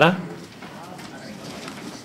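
A man's voice over a microphone ends just after the start, followed by quiet room tone in the chamber with faint, indistinct background sounds.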